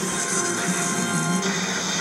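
Background music playing from a television, steady and unbroken.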